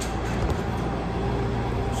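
A steady low mechanical hum, with one faint knock about half a second in.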